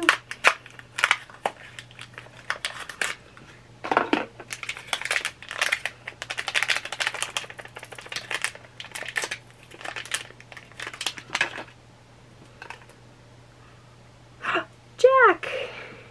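A small mystery pin box and its packaging being opened by hand: irregular crinkling, tearing and clicking for about twelve seconds. Near the end there is a short vocal sound that falls in pitch.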